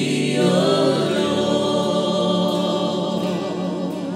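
Worship singers holding long, wavering sung notes over live band accompaniment; a low bass note comes in about a second in, and the music eases off toward the end.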